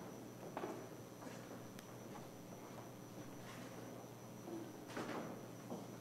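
Faint shuffling footsteps and a few soft knocks as a choir of about twenty people moves into position on a stage, over a steady low room hum.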